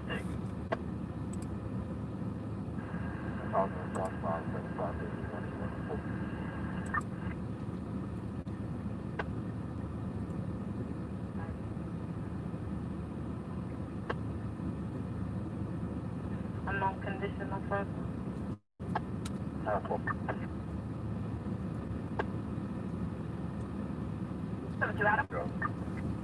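Steady low rumble inside a stationary car, with faint, short bursts of emergency-scanner radio voices a few times and a thin steady tone for a few seconds near the start.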